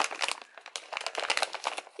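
A brown paper bag being crumpled and pulled open by hands, a quick, irregular run of paper crackles and rustles.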